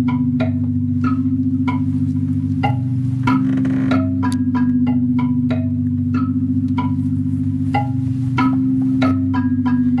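Live electronic music from synthesizers: a sustained low drone whose pitch shifts every second or so, with short struck notes ringing out irregularly over it, about two or three a second.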